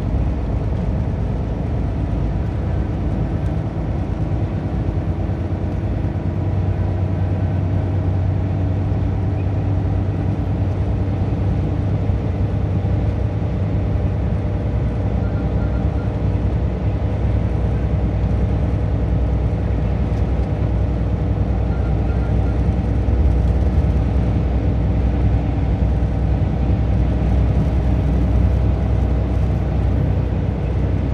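Car driving at highway speed: a steady low hum of engine and tyre noise on the road.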